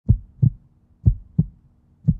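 Heartbeat sound effect: low double thumps, lub-dub, twice, about a second apart.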